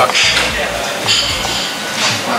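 Metal fork clinking and scraping against a ceramic plate as it cuts into an omelet, in short bursts near the start and again about a second in, over background music.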